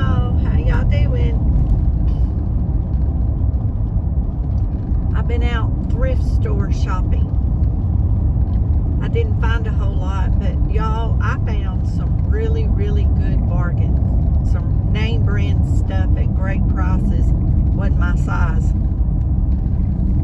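Steady low road and engine rumble inside a moving car, with a person talking over it at intervals.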